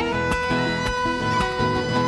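Argentine chacarera played live by a folk band in an instrumental passage: a violin holds one long note over rhythmically strummed guitars.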